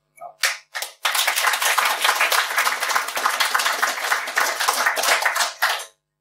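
Audience applauding: a few scattered claps, then steady applause for about five seconds that stops just before the end.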